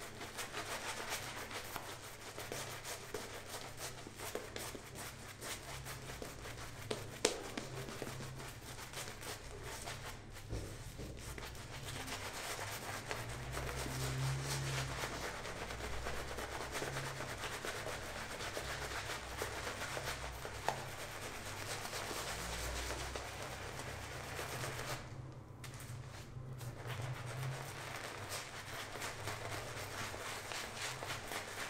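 Shaving brush working thick lather over a bearded face: a steady rubbing of bristles through the foam, with a single sharp click about seven seconds in.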